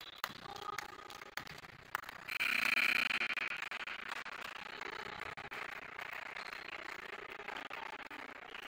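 Basketball game sounds on a hardwood gym court: short high squeaks of sneakers and scattered knocks of the ball bouncing. A louder rush of noise about two seconds in lasts roughly a second.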